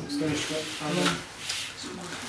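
Quiet, indistinct talk of people in a small room, with a few short rustling noises.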